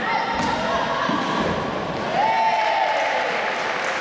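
Dull thuds of a gymnast's hands and feet landing on a sprung floor-exercise mat, once at the start and again about a second in, over the steady chatter of voices in a large sports hall.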